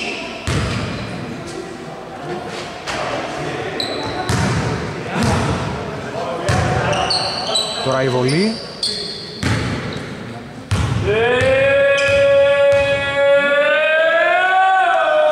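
A basketball bouncing on a hardwood court in a large, echoing hall, roughly once a second. About eleven seconds in, a loud, long held pitched note with many overtones starts and carries to the end.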